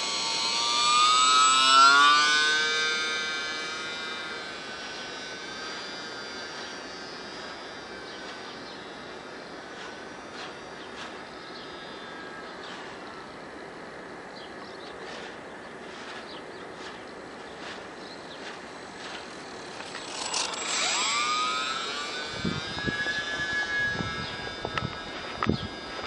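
Brushless electric motor and propeller of a UMX micro J-3 Cub RC plane whining, rising in pitch as the throttle opens and loudest about two seconds in. It then settles to a fainter steady whine as the plane flies off, and swells and rises in pitch again near the end as it comes back closer.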